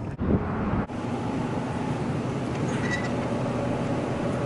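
Steady hum of a supermarket's refrigerated dairy aisle, with a faint steady tone in it, starting suddenly just under a second in.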